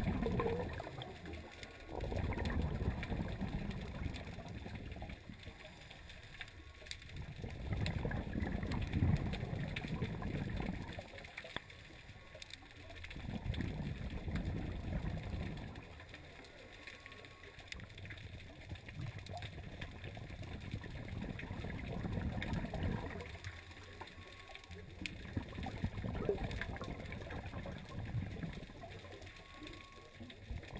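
Scuba diver's breathing through a regulator, heard underwater through a GoPro housing: exhaled bubbles rumble and gurgle in swells about every five seconds, fading between breaths.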